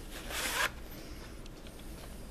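A VHS cassette being slid out of its plastic case: one short scraping rush that grows louder and cuts off sharply within the first second.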